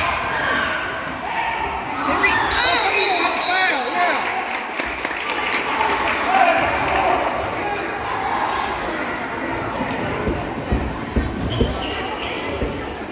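Basketball game in an echoing gymnasium: a run of sneaker squeaks on the court about three seconds in, over steady spectator chatter, and a few ball bounces near the end.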